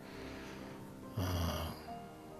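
Soft background music with steady held notes, and about a second in a man's short audible breath lasting about half a second.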